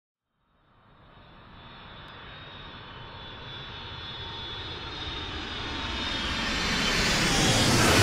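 Jet aircraft engines with a high whine, fading in and growing steadily louder as the aircraft approaches, peaking as it passes at the very end.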